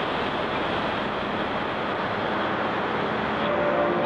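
Dark ambient drone music: a dense, steady wash of rumbling noise, with held pitched tones fading in near the end.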